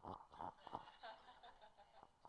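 Near silence: room tone with faint, distant voices and a slight chuckle from the room.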